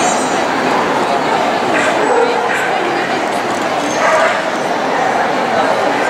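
Small dogs giving a few short yaps over the steady chatter of a crowd in a large hall.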